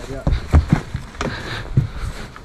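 Several irregular low thumps and knocks of handling on a fishing boat's deck as the landing net is picked up to land a fish.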